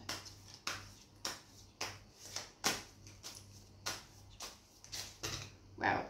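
A tarot deck being shuffled by hand: short crisp card slaps and rustles, about two a second, the loudest near the end.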